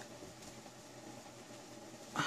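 Near silence: faint steady room tone and hiss, with no distinct tool clicks.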